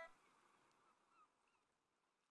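Near silence, with a few very faint, short, gliding chirps about a second in.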